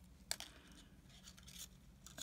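Faint scratching and ticking of fine jewellery wire being pushed through and worked into a wire-wrapped pendant by hand, with one sharper click about a third of a second in.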